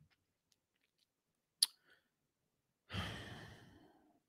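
A man's long sigh near the end, breathy and fading out over about a second. A single sharp click, like a mouse button, comes about a second and a half in against near silence.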